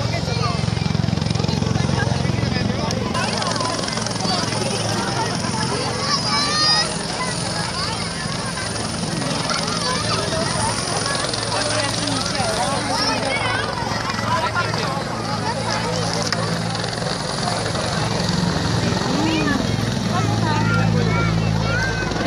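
Helicopter rotor and engine drone from a low-flying helicopter under a crowd's loud chatter, the drone fading back for a stretch and returning strongly near the end.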